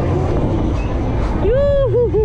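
Low, steady rumble of wind buffeting a camera mounted on a KMG Inversion swing ride as the gondola swings upward. About one and a half seconds in, a rider lets out a high yell that holds and then wavers down and up twice.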